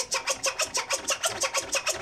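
Vinyl record being scratched by hand on a turntable: quick, even back-and-forth strokes, about eight or nine a second.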